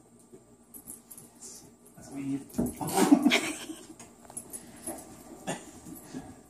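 A Shiba Inu puppy and a dachshund play-fighting, with dog vocal noises rising to a loud burst from about two to four seconds in, then scattered smaller noises.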